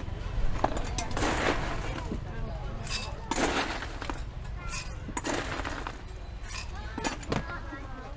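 Ice cubes clattering as they are scooped out of a cooler and tipped into a plastic blender jug, in three rattling bursts about two seconds apart, with a few sharp clicks between them.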